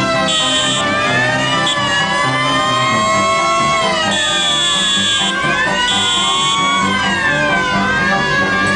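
A brass-and-banjo trad jazz band playing, with tuba notes underneath, while siren wails rise and fall slowly over the music in several overlapping glides. A high steady whistle-like tone cuts in three times, briefly.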